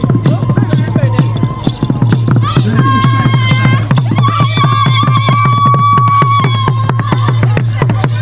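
Fast traditional dance drumming with a steady, driving beat. From about three seconds in, long high notes are held over the drums.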